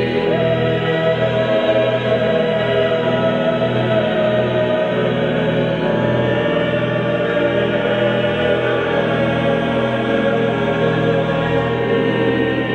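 Mixed chamber choir of about a dozen voices singing sustained chords of a Kyrie, accompanied by pipe organ.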